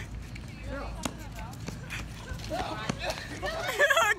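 Outdoor crowd background: several voices talking and laughing at a distance, louder toward the end, over a low steady rumble, with a few light footfalls on concrete.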